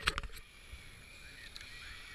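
Kayak being paddled on flat water: a sharp knock right at the start with a few quick clicks after it, then faint paddle strokes and water trickling against the hull.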